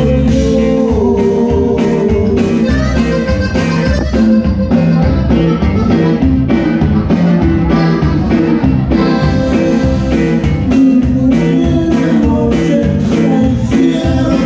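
Live conjunto band music with no singing: two button accordions carry the melody over guitar, bass and drum kit, with a steady beat.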